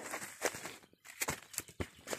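Footsteps on dry leaf litter, twigs and stones: a few irregular steps with a brief pause about halfway.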